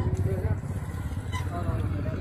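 People talking in the background over a steady low rumble, with one brief click past the middle.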